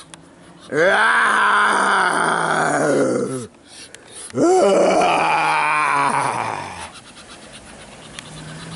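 A man's voice making two long, drawn-out growling groans, each about three seconds, with a short pause between them.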